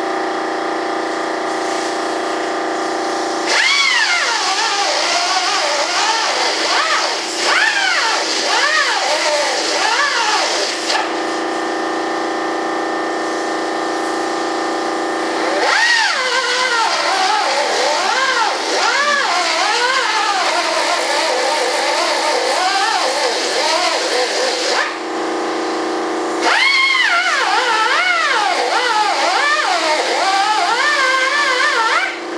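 Electric power sander working wood: it runs at a steady pitch when free, then sags and recovers in pitch over and over as it is pressed into the work, in three long loaded stretches.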